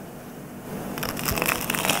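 Crisp crust of a toasted baguette slice crackling and crunching in a rapid run of small cracks, starting about a second in. The crust is crisp from toasting.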